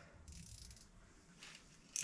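Faint, brief whir of a small spinning reel on an ice-fishing rod being cranked while a hooked fish is reeled up, about a quarter second in, then little else.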